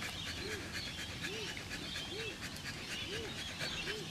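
A dog whining softly: five short rising-and-falling whimpers, about a second apart.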